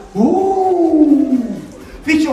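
A single long, drawn-out vocal cry from a person: it rises quickly at the start, then slides slowly down in pitch for about a second and a half before fading.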